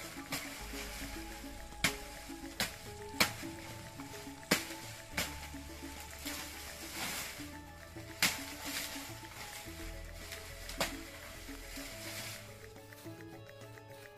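Background music with a slow, steady melody. Over it come about seven sharp chops of a machete cutting into banana plant stems and leaves, spaced irregularly through the first eleven seconds.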